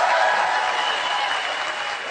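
Audience applauding, easing off slightly toward the end. A held tone sounds over the clapping in the first part and fades out.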